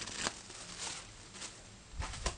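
Faint crinkling rustles of thin acrylic sheets and their clear protective plastic film being handled, a few short soft rustles about half a second apart.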